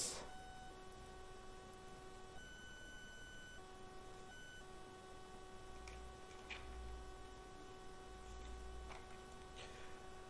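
Faint electrical hum and whine: several thin steady tones that break off and change pitch a few times. A few faint clicks come in the second half.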